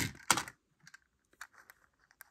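Small hard plastic bowls clacking on a table as one is set down and another picked up: two sharp clicks at the start, then a few faint light ticks.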